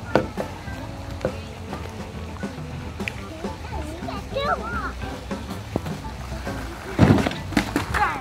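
Background music with scattered small knocks and a brief child's voice in the middle. About seven seconds in comes a loud thump with a few knocks after it, as a skateboard and its rider come down off a wooden ramp.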